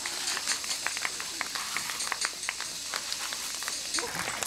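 Irregular footfalls of runners slapping on wet pavement over a steady hiss of water spraying from a garden hose.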